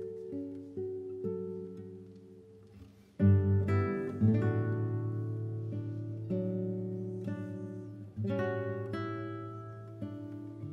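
An ensemble of nylon-string classical guitars plays plucked notes that fade softly, then strikes full chords, loud at about three seconds in and again near four and eight seconds.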